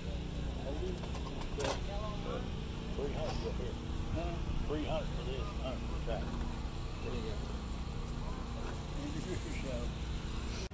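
Indistinct voices of people talking in the background over a steady low rumble. A single sharp click is heard a little under two seconds in.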